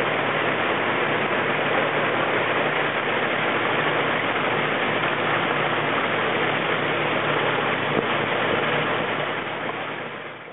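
Steady rushing noise with a low machine hum, from the water circulation and filtration pumps of an indoor sea turtle holding tank. It begins to fade near the end.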